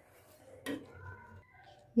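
Quiet room tone with a single short knock about two-thirds of a second in and a few faint, thin tones after it; no mixer motor is running.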